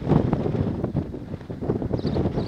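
Wind blowing across the microphone outdoors: a low rumbling noise that rises and falls in gusts.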